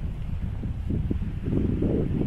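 Wind buffeting the microphone: a low, rumbling rush with no other clear sound over it.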